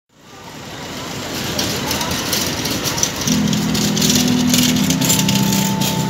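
Rainy street noise that fades in from silence, with passing voices and crackling patter; about three seconds in a steady low hum joins and holds.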